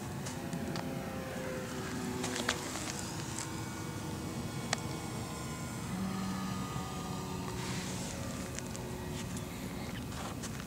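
A distant engine droning, its pitch drifting slowly, with two sharp clicks about two and a half and nearly five seconds in.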